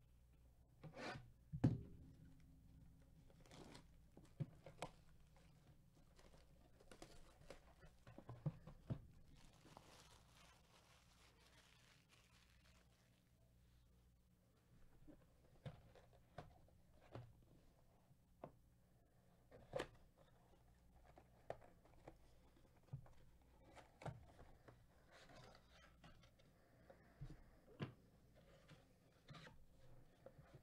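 Faint handling of a cardboard trading-card box as it is torn open and its inner tray of packs pulled out: scattered taps, knocks and rustles of cardboard, with a louder knock about two seconds in and a longer soft tearing rustle around the middle.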